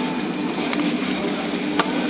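Steady background din of a busy restaurant dining room, with one sharp click near the end.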